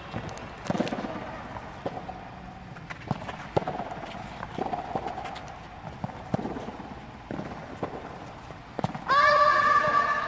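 Tennis ball being hit with racquets and bouncing on a clay court during a children's rally: irregular sharp knocks, about one a second. Near the end a loud held shout cuts in.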